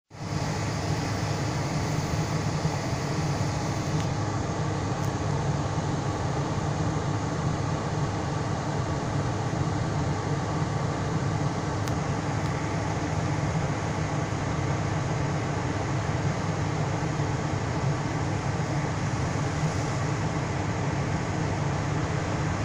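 Steady low hum inside a stationary car's cabin, with the engine idling and the air conditioning running.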